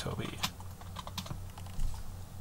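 Computer keyboard keys being pressed one at a time, a few separate sharp clicks while a short name is typed in, over a steady low hum.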